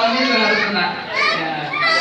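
Several people talking over one another with laughter: lively, overlapping chatter from a group in a room.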